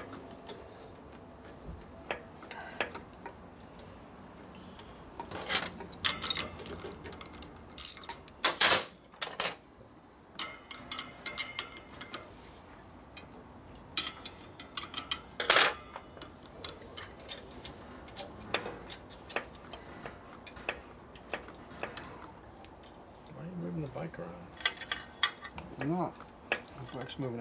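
Hand tools and metal clutch parts clinking and tapping while a motorcycle clutch is worked on. The clinks come in scattered clusters with quieter spells between.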